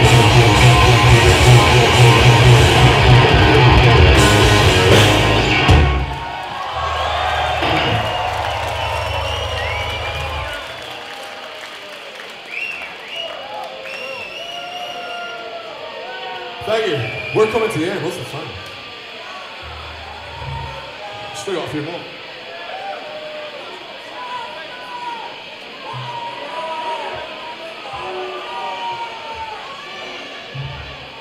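A blackened speed metal band playing loud electric guitars, bass and drums, with the song ending about six seconds in on a held chord that rings out for a few more seconds. Then a crowd cheering and shouting between songs, with a few single low guitar or bass notes now and then.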